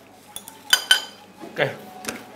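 Tableware on a dining table clinking: a few light clicks, then two sharp ringing clinks close together about three-quarters of a second in.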